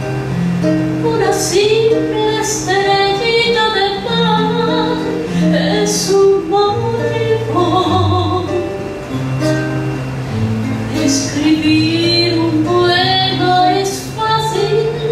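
A woman singing into a microphone, accompanied by a man playing acoustic guitar.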